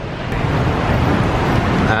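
Steady city traffic noise: a dense rumble and hiss of road vehicles.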